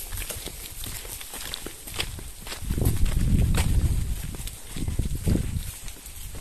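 Footsteps on sandy ground and the crackle of plastic grocery bags swinging in a man's hands as he walks. A louder low rumble comes through in the middle.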